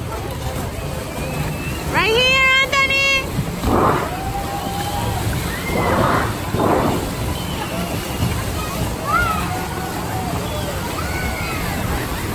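Pool water sloshing and splashing as ride boats churn around a circular track, with a few sharper splashes near the middle and a babble of distant voices. About two seconds in, a loud high-pitched shout rings out twice in quick succession.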